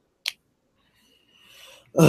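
A single short, sharp click about a quarter second in, then near quiet with a faint breathy hiss shortly before speech resumes.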